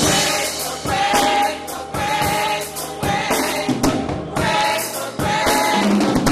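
Church gospel choir singing together, with an accompanying band keeping a steady beat.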